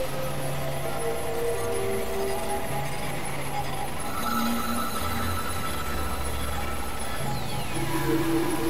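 Dense, noisy experimental electronic music made of several tracks layered at once. Held low tones step from pitch to pitch every second or so over a hissing wash, and a falling glide comes near the end.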